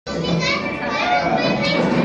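Many young children's voices together, loud and overlapping, starting suddenly.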